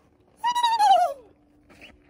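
A woman imitating a common loon's call with her voice: one wavering call just under a second long that starts high and slides down in pitch, which she says sounds like a turkey.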